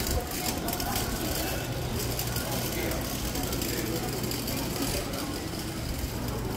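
Busy traditional street-market ambience: indistinct voices of shoppers and vendors over a steady low rumble.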